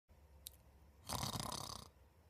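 A man snoring: a single rough snore lasting under a second, starting about a second in, with a faint tick just before it.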